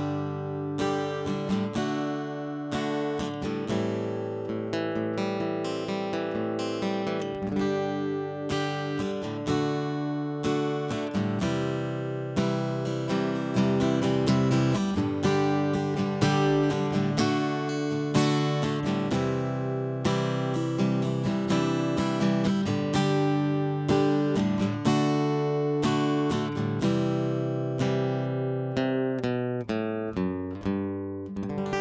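Jasmine JD36-CE dreadnought cutaway acoustic-electric guitar played through its piezo pickup, with chords and single notes picked in a continuous flowing pattern. The tone is snappy and immediate, with the EQ set flat.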